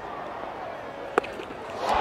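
Steady stadium crowd murmur, then about a second in a single sharp crack of a cricket bat striking the ball cleanly for a big lofted hit. The crowd noise swells near the end as the ball carries for six.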